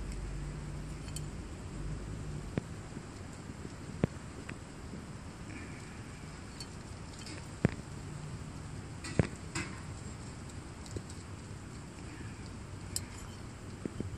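A few sharp, light metallic clicks and clinks, about five spread out, from a cleaned Nikki carburetor for a Briggs & Stratton opposed twin being turned over and handled in the hand, over a steady low background.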